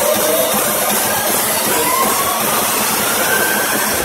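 Loud electronic dance music build-up over a festival PA, recorded on a phone in the crowd: a dense hissing noise sweep with a faint rising synth tone and little bass, the heavy bass returning right at the end.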